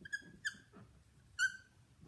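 Dry-erase marker squeaking on a whiteboard as it writes: three short high-pitched squeaks, near the start, about half a second in and about a second and a half in, with fainter scratching strokes between.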